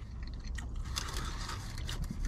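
Close-up chewing of french fries, with faint irregular crackles and scraping as fingers handle the paper fry container.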